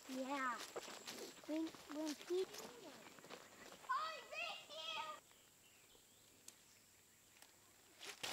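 A child's voice calling and shouting, high-pitched and faint, for about the first five seconds. It then drops abruptly to near silence.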